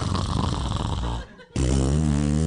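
A man's deliberate mouth noise: a rough, snore-like snort lasting about a second. After a brief gap, a long, held, low-pitched vocal tone follows.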